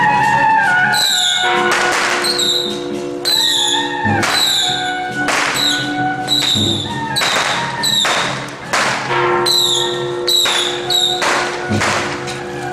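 Traditional temple procession music: held wind tones with loud crashing percussion strikes about every second, played as the palanquin is carried along.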